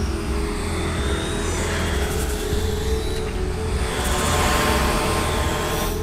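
Background music with steady held tones, overlaid with the whirring flight noise of a small quadcopter drone that swells in the second half.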